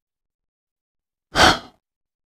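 A short audible sigh, a single breathy exhale of about half a second, coming about a second and a half in after dead silence.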